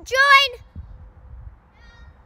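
A short, high-pitched whining voice call in the first half-second, bending in pitch, then only faint background.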